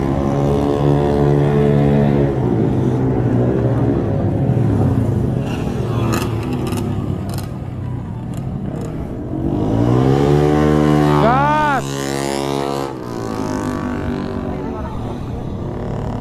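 Motorcycle engines revving on the street. After a steady drone that sinks away after about two seconds, one bike's engine climbs sharply in pitch and drops again as it passes, about eleven seconds in.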